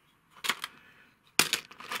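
Small plastic scenery pieces clicking and clattering as a hand rummages in a compartmented storage drawer: one click about half a second in, then a quick run of clatters near the end.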